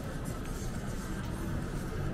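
Outdoor city background noise: a steady low rumble with no distinct event standing out.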